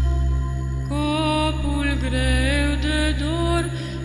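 Orthodox chant: a single voice sings a slow, ornamented melodic line over a steady low drone, the voice entering about a second in.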